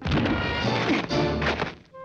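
Cartoon fight sound effects: a dense run of thumps, whacks and crashes over the orchestral score for about two seconds, stopping abruptly just before the end. It is the noise of the cat being beaten, with his ears left pinned back.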